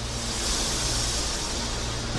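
Rushing noise swell, an intro whoosh sound effect, over a low held tone. It grows brightest about halfway through.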